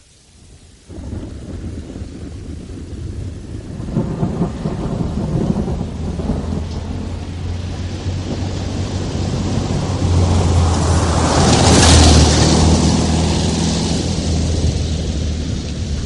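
Rain and thunder. A steady rain noise starts suddenly about a second in and builds, with a long rolling rumble that swells to its loudest about twelve seconds in. A low steady drone runs underneath in the second half.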